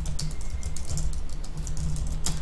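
Computer keyboard being typed on: a run of quick, irregular key clicks.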